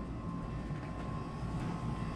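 Steady low hum of room tone, with a faint thin steady tone above it.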